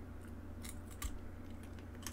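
Faint room tone with a steady low hum and a few short, sharp clicks around the middle.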